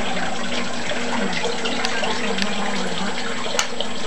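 A pellet stove's blower fan running steadily, a rushing noise with a low hum, as the stove tries to light, with a few sharp clicks.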